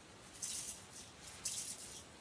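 Two short, high rattly hisses about a second apart as plastic pieces of a toy play kitchen are handled.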